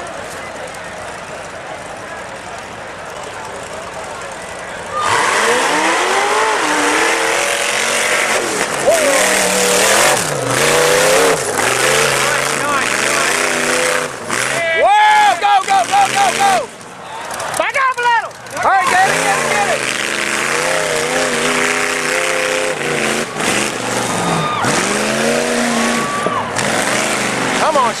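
Rock-crawler buggy's engine revving hard over and over, its pitch rising and falling, as it climbs a steep rocky hill. It gets much louder about five seconds in, and in the middle the revs climb to a high pitch with brief sudden drops.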